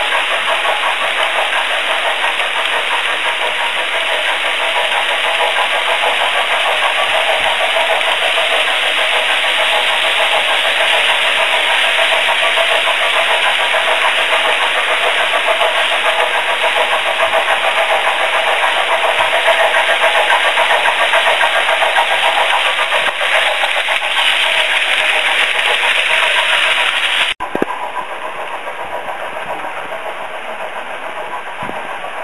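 Metal wheels of a long H0 scale model freight train rolling over the track past the microphone: a loud, steady rolling noise. It cuts off sharply near the end, giving way to a quieter, thinner sound.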